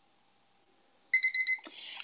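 An electronic timer beeping: a quick run of short, high beeps for about half a second, starting about a second in, then a click. The beeps mark the end of a timed silent period.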